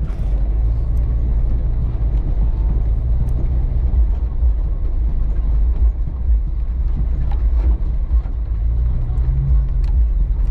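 Jeep Cherokee XJ driving slowly over packed snow, heard from inside the cabin: a low, steady engine and road drone whose engine note rises slightly near the end, with a few faint ticks.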